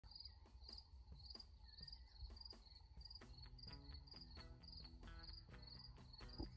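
Faint cricket chirping at a steady pace, about two high chirps a second. Soft music comes in about three seconds in.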